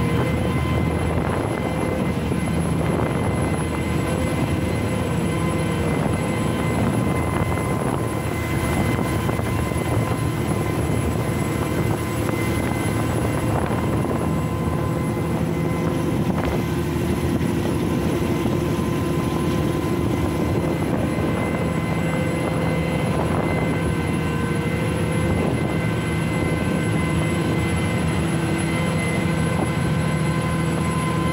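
The twin 540 hp Yuchai marine diesel engines of a small ro-ro vessel running steadily at cruising speed, a constant drone heard on deck over the rush of the wake along the hull.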